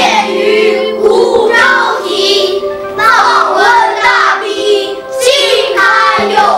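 A children's chorus singing a Chinese song in verse over instrumental backing.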